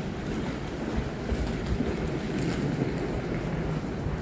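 Steady low rumble and hiss of wind and handling noise on the microphone of a camera carried at walking pace.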